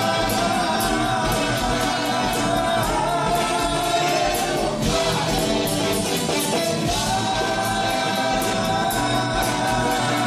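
Live rock band playing: sung vocals over drums, bass, electric guitars and keyboards, heard from the audience through the concert sound system.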